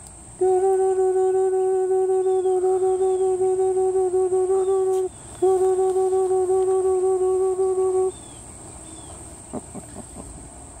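A person humming one long, steady, fairly high note for about five seconds, then again for about three seconds after a short break for breath.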